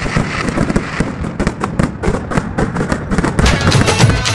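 Fireworks going off: a rapid, irregular run of bangs and crackles, with music coming back in near the end.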